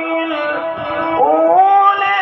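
A male qari chanting Quran recitation in maqam Saba. One long held note tails off in the first half second; after a short pause a new phrase rises in a glide about a second in and is held.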